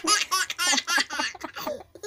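A baby laughing in a quick run of short, high-pitched bursts, about six a second, breaking off near the end.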